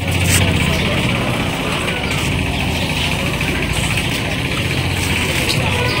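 Steady outdoor street noise: a low engine-like hum with a steady high hiss over it, unchanging throughout.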